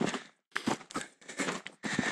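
Footsteps crunching on a stony, gravelly hill path, about two steps a second.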